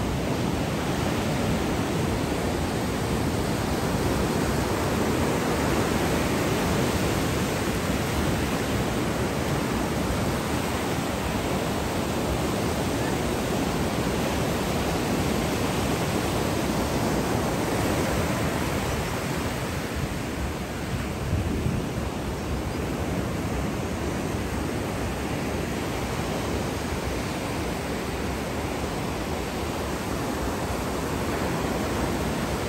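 Ocean surf washing in over a sandy beach and breaking around rocks: a steady rushing noise that eases a little past the middle.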